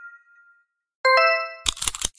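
Logo-animation sound effects. A bell-like chime fades out, then about a second in a bright two-struck chime rings. Near the end comes a quick run of sharp clicks as the logo lettering appears.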